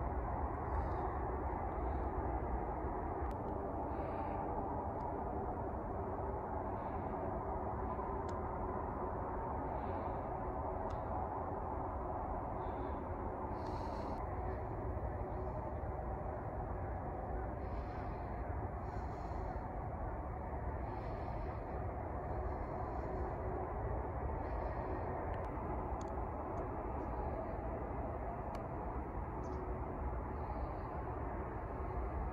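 Steady outdoor background hum with faint, short bird calls now and then, more of them in the second half.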